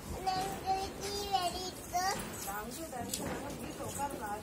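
A young child's high voice making drawn-out calls and exclamations, with a short sharp click about three seconds in.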